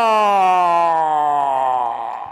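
Race announcer's voice holding one long drawn-out call on the end of the winner's name, Alejandra Traslaviña, falling steadily in pitch and fading out near the end.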